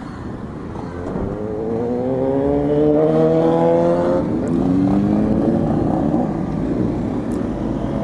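Motorcycle engine accelerating hard through the gears. Its pitch climbs, drops at an upshift a little over four seconds in, climbs again and drops at a second upshift about six seconds in.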